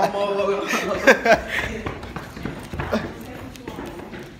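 Teenagers talking and laughing close to a handheld phone's microphone, the voices loudest in the first second and a half and quieter after.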